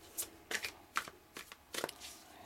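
A thick deck of tarot cards shuffled by hand, giving a few short, sharp card snaps at irregular intervals, with several close together near the end.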